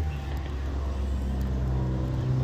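Steady low drone of a car heard from inside the cabin, with a faint even hum above it.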